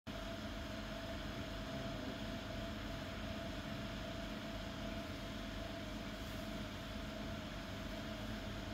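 Steady machine hum: a constant mid-pitched whine over an even low drone.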